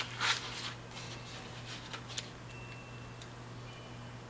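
Paper rustling as planner stickers and a sticker sheet are handled on the page: a few short rustles, the loudest in the first half-second and two more around two seconds in. A steady low hum runs underneath.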